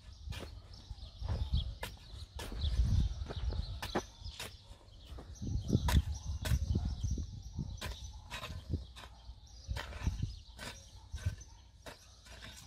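A steel hoe chopping into loose, dry, ploughed soil in repeated strokes, about two a second and somewhat irregular, each a short sharp strike.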